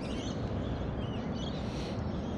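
A few faint, short bird chirps over a steady outdoor hiss and low rumble.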